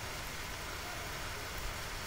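Steady, even background hiss with a faint low rumble and no distinct event: the room tone and noise floor of the narration microphone.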